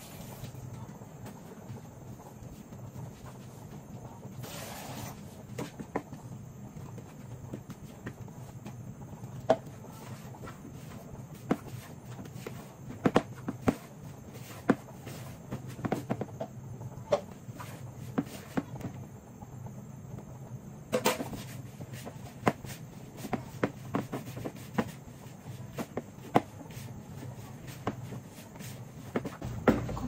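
Hands mixing and kneading flour dough for Jamaican boiled dumplings in a plastic bowl: scattered soft knocks and taps of hands and bowl over a steady low hum, with a brief hiss about four and a half seconds in.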